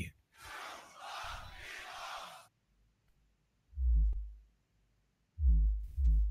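A beatboxer's vocal sub-bass played through a loop station. It starts with a breathy hiss lasting about two seconds, then after a short pause comes one deep sub-bass hit, and a second begins near the end.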